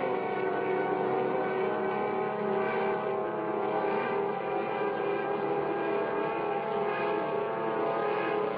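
Cartoon soundtrack: a steady airplane engine drone mixed with orchestral music.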